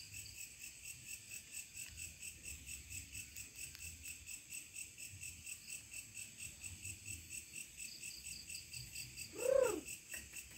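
Crickets chirping in a steady, even pulse of about four chirps a second. A brief voice-like sound rises and falls near the end.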